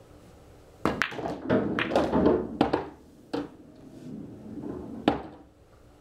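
A pool shot on a coin-operated bar table. The cue tip strikes the cue ball just under a second in. Balls then click against each other and drop into pockets, rumbling as they roll through the table's inner ball-return channels, with a few more clacks that end in one last sharp click about five seconds in.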